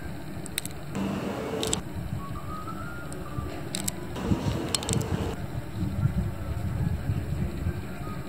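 Night street ambience: a steady low rumble of traffic, with a few faint clicks.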